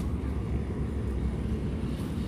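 A steady low rumble with a thin hiss above it, unbroken and without distinct events.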